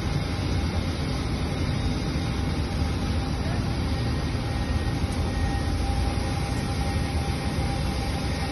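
Steady rushing roar at a cryogenic oxygen vaporizer installation in operation, heaviest in the low end, with a faint steady hum over it.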